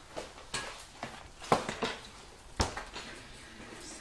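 A few knocks and clatters of kitchen things being handled and set down on a worktop, including a cake on its board being put down; the sharpest come about a second and a half in and again a second later.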